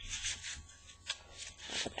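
Cardstock pages and paper tags of a handmade mini album rustling and rubbing against each other as they are handled and turned, in a string of short brushing sounds.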